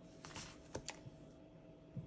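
A few faint light clicks and taps as paper-covered sticker books are handled and moved on a tabletop.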